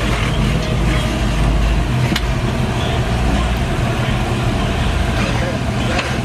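Lowrider car's engine running at low speed with a steady low rumble while the car three-wheels on its hydraulic suspension, with a single sharp click about two seconds in.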